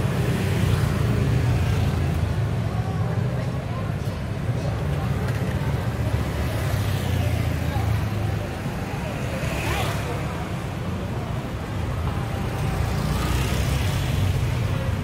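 Street traffic: motor scooters and cars running along the road under a steady low rumble, with one vehicle passing close about ten seconds in and another near the end. People's voices can be heard among the traffic.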